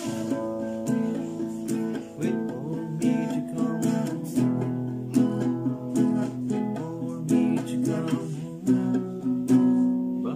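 Nylon-string classical guitar playing chords strummed with the fingers in a steady rhythm, the chords changing every few beats.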